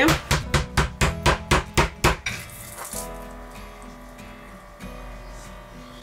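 Raw chicken fillet being pounded with a metal meat tenderizer on a cutting board: quick, even strikes about five a second for the first two seconds, then they stop and only soft background music remains.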